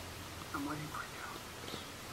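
A woman speaking softly, close to a whisper, in a few broken words.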